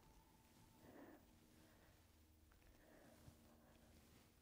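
Near silence: room tone, with a faint brief sound about a second in.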